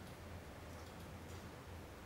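Quiet room tone in a lecture hall: a steady low hum under faint hiss, with a few very faint ticks.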